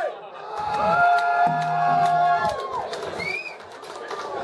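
Audience whooping and cheering, with several voices holding long notes, then a short rising-and-falling whoop just past three seconds in.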